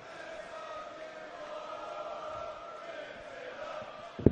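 Arena crowd chanting in unison, holding long drawn-out notes over the general hubbub of the audience.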